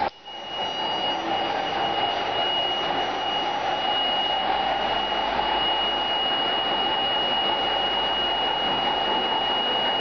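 Steady hiss with a constant high-pitched electronic whine, starting abruptly after a brief dropout at the very beginning.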